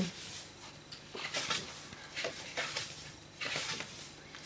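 Paper rustling as the pages of a scrapbooking paper pad are turned and smoothed flat by hand, in several short rustles.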